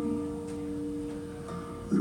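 Live acoustic guitar chord ringing and slowly fading in a pause between sung lines. The voice comes back in near the end.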